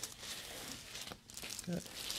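Soft crinkling and rustling of the paper headrest cover and clothing as the patient's head and neck are handled during an upper-neck chiropractic adjustment.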